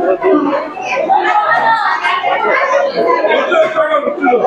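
Chatter of many people talking at once in a busy restaurant dining room.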